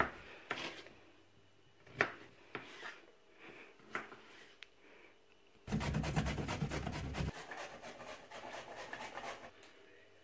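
A carrot being grated on a handheld metal grater, a fast run of rasping strokes that starts a little past halfway and goes on for nearly four seconds, heaviest in its first second and a half. A few light knocks come before it.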